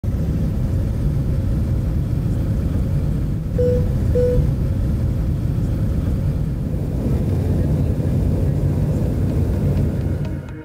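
Airliner cabin noise heard from a window seat: the steady low rumble of jet engines and rushing air. Two short beeps at the same pitch sound a little over three and a half seconds in, half a second apart.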